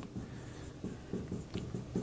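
A pen writing a few short, irregular strokes on the surface of a lecture display board, faint against the room.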